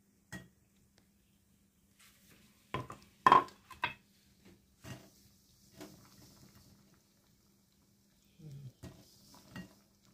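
Metal spatula stirring in a metal wok, with intermittent scrapes and sharp clinks against the pan. A cluster of clinks comes about three seconds in, the loudest of them in the middle.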